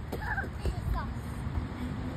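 A young child's brief high vocal sounds, a short one near the start and falling squeals about a second in, over a steady low rumble.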